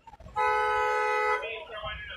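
A vehicle horn sounding once, a steady flat tone lasting about a second.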